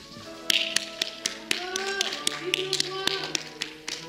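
Recorded music playing with a steady run of sharp hand claps, several a second, starting about half a second in; a voice rises over the music near the middle.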